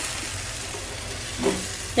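Pancakes topped with banana slices sizzling steadily in a frying pan, with a brief voice sound about one and a half seconds in.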